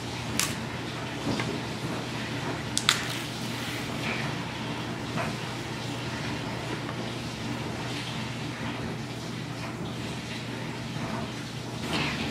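Soft handling sounds of a banana being broken off the bunch and peeled over a plastic cutting board, with a couple of sharp clicks in the first three seconds, over a steady low room hum.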